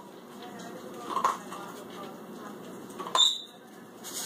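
Pet food bowl clinking on a tile floor: two sharp clinks about two seconds apart, the second louder with a brief high ring, over a steady low rustle.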